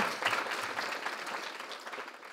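Audience applauding, a dense patter of many hands clapping that slowly tapers off toward the end.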